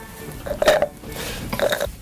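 A man burping loudly, drawn out over about a second and a half.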